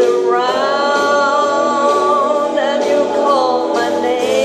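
A woman singing a slow country song into a microphone through a PA, holding one long note through the first half before moving on to the next phrase.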